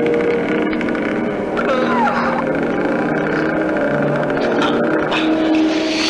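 A film score of held, droning chords, with a man's strained cry of pain that slides down in pitch about two seconds in.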